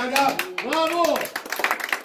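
Flamenco palmas: hand claps keeping a quick rhythm. Over them a voice calls out twice, each call rising and falling in pitch, within the first second or so.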